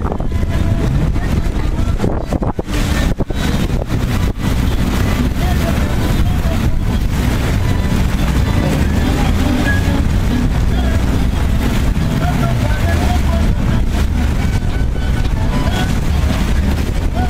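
Wind buffeting the microphone on a moving boat over the low, steady rumble of the boat's engine, with a few brief dips in the buffeting about three seconds in.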